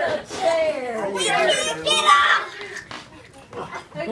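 Children's voices shouting and squealing during rowdy play, several at once, with high yells about a second or two in; quieter near the end.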